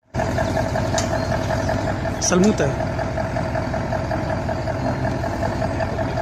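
Diesel engine of a Mercedes-Benz 2544 crane truck running steadily, with a low pulsing rumble and a steady whine over it.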